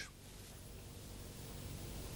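Faint steady hiss with a low hum: dead air on an old broadcast recording, with no voice coming over the failed link to the correspondent.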